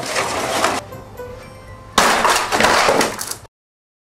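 Pink styrofoam insulation-board model buildings crunching and cracking as a person crashes into them, in two loud bursts about a second apart. The sound cuts off suddenly near the end.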